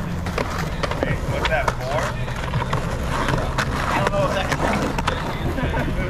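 Skateboard wheels rolling over rough, cracked asphalt, a steady rumble broken by many sharp clacks of boards on the ground.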